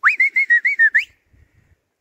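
A person whistling a short phrase of about a second: a quick upward sweep into a wavering, warbling tone that ends with an upward flick, then stops.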